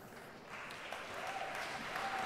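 Audience applause starting about half a second in and holding steady at a modest level.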